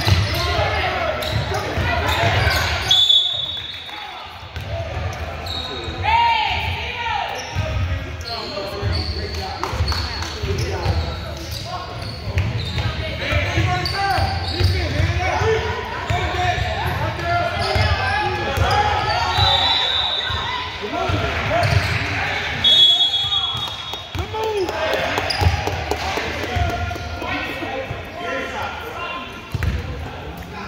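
Basketball dribbling and bouncing on a hardwood gym floor, with players and spectators calling out in an echoing hall. A short, high referee's whistle sounds a few times.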